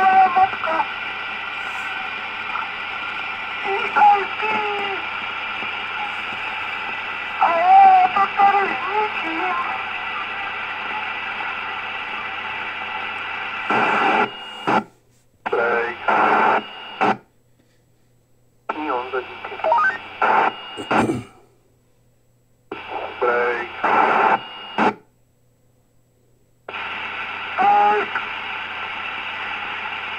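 K-PO DX 5000 CB radio on FM receiving a weak transmission: faint, broken speech buried in hiss, over a steady low hum. In the second half the audio cuts out to silence four times for a second or two each, as the squelch closes between bursts of signal.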